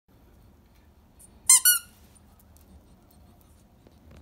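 A squeaky toy squeezed twice in quick succession, giving two short, high squeaks about a second and a half in.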